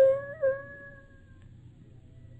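A puppy's long whine, one drawn-out cry with a small catch in pitch about half a second in, fading away by about a second and a half, over the low steady hum of an old radio-drama recording.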